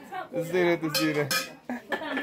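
Aluminium cooking pots and bowls clanking against each other and against a metal ladle as they are handled, a few separate clinks.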